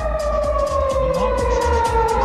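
A siren wailing, its pitch falling slowly and turning to rise again at the end, over background music with a steady beat.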